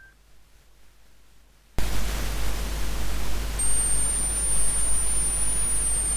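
Loud, steady static hiss with a low hum beneath it and a thin, wavering high whine over it, cutting in suddenly after near silence about two seconds in.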